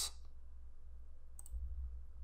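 A single computer mouse click about one and a half seconds in, clicking Run to execute the script, over a faint low hum.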